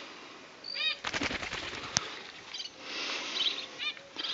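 Short repeated bird chirps, then a brief burst of rapid fluttering like wing flaps, with a single sharp click about two seconds in; more chirps near the end.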